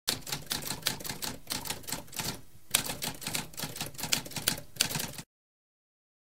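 Typewriter keys struck in a fast run of clacking keystrokes. The typing breaks off briefly about two and a half seconds in, resumes with a sharp strike, then stops abruptly about five seconds in.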